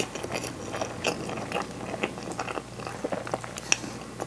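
A mouthful of natto and rice being chewed: a steady run of small, sticky, wet mouth clicks, with one sharper click near the end.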